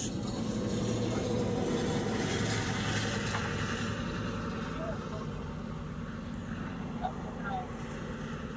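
Steady low drone inside a vehicle cab, the engine running, with no clear voice over it.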